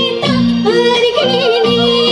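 Live music through a PA system: a woman singing a wavering, ornamented melody over a band playing short, repeated chords.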